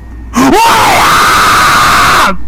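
A person's loud scream that starts suddenly about half a second in, rises in pitch and then holds one high, steady note for nearly two seconds, meant to scare a sleeper awake.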